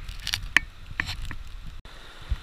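Gravel and stones clinking as they are dug and moved at a rocky river bank: four or five short sharp clicks over a low steady rumble, cutting out briefly near the end.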